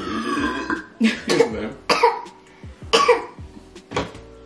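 Laughter in several short bursts about a second apart, each falling in pitch.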